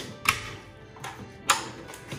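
Two sharp clacks about a second apart as the steel drawers of a mechanic's tool cart are shut and pulled open on their slides, over background music.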